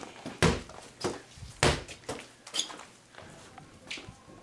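Several dull thumps and knocks, about a second apart, the loudest and deepest about one and a half seconds in, from a small rubber play ball and a plastic toy bucket being handled.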